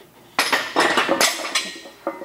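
A run of metallic clinks and clanks from a plate-loaded barbell as it is carried back into a steel power rack, the iron plates rattling on the bar sleeves and knocking against the rack. The clanking starts about half a second in and dies away near the end.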